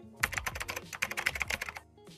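Sound effect of rapid keyboard typing: a quick, even run of key clicks that stops shortly before the end.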